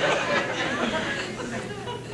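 Studio audience laughter and murmuring, dying down.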